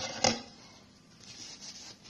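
Kitchen handling noise: a sharp knock about a quarter second in, then faint rubbing and scratching as hands work a damp paper towel over a foil-lined pan.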